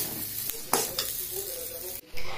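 A long steel spoon stirring and scraping a frying onion-and-spice masala in a stainless steel kadai, with a few sharp metal-on-metal clinks against the pan over a steady sizzle.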